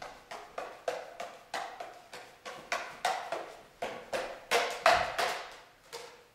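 Five juggling clubs being juggled: a sharp smack as each club lands in a hand, about three catches a second in an even rhythm, each followed by a short echo in the hall.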